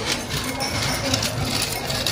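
Chocolate cereal pieces rattling out of a turn-knob gravity cereal dispenser into a small ceramic bowl: a quick run of light clicks and clinks.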